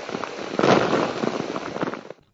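Cyclone Hudhud's wind and rain buffeting the microphone: a rough rush of noise full of rapid crackling clicks, swelling again a little over half a second in.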